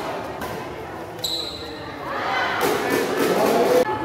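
Badminton doubles play echoing in a sports hall: footfalls and racket-on-shuttle hits, a short high squeak about a second in, then loud voices calling out for the last two seconds.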